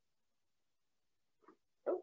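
Near silence for about a second and a half, then a short faint sound from a woman's voice and the start of her spoken "Oh" at the very end.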